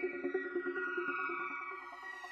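Electronic music: sustained chords held over quick short notes, with no speech.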